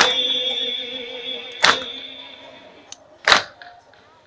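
A crowd of mourners beating their chests in unison (matam): three loud slaps about a second and a half apart, keeping the beat of the lament. A held sung note from the lament fades away over the first couple of seconds.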